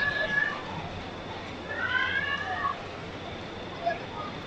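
High-pitched, drawn-out cheering calls from audience members, twice: once at the start and again about two seconds in, over a steady low hum.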